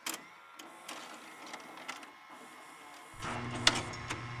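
Videotape machine mechanism clicking and whirring over a faint hiss, then a steady low electrical hum comes in about three seconds in as the CRT picture comes up.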